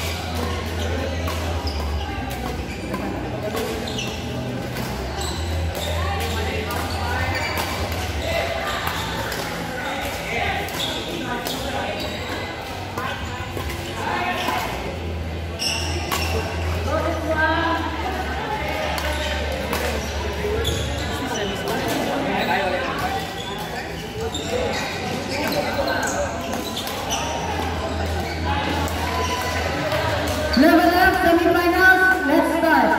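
Badminton rally echoing in a large indoor hall: repeated sharp racket strikes on the shuttlecock and players' footfalls on the court, over a steady murmur of background voices.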